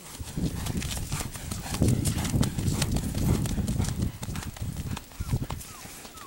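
Horse's hoofbeats on soft dirt as it passes close by, a dense run of thuds that swells in the middle and fades near the end.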